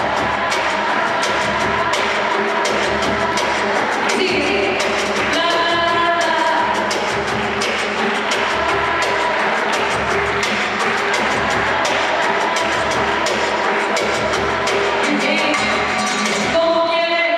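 A live band plays a song with a steady drum beat, and a voice sings a line around the middle.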